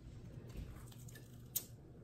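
Quiet handling of a piece of crispy fried chicken lifted from a plate by hand, with a soft thud about half a second in and one short, sharp click about a second and a half in, over a low steady hum.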